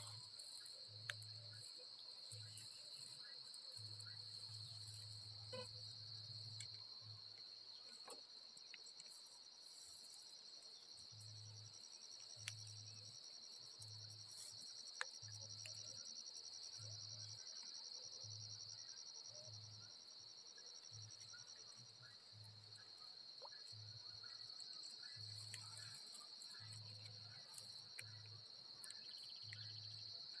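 Insects chirring in a steady high-pitched chorus, with a low pulsing note repeating about once a second and a few faint clicks.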